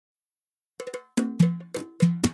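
Start of a shaylat track's percussion intro. It is silent at first. Just under a second in comes a quick triple tap, then three stronger pitched percussion hits about a third of a second apart, each ringing briefly.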